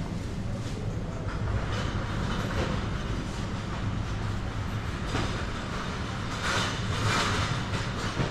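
Supermarket ambience: a steady low hum, as of the refrigerated freezer cabinets running, under a wash of store noise that swells a few times between about five and seven seconds in.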